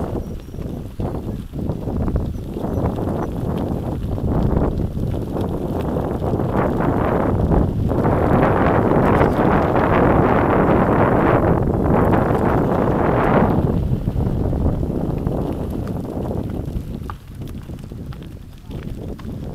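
Mountain bike rolling downhill on a gravel forest track: tyres crunching and the bike rattling over the bumps in quick irregular knocks, with wind on the microphone, loudest in the middle stretch.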